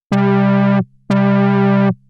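Moog Mother-32 synthesizer playing the same low note twice, each note lasting under a second with a bright start. Its filter cutoff is driven by a Nonlinear Circuits Sly Grogan envelope with damping turned fully down, so the attack has the least amount of ringing.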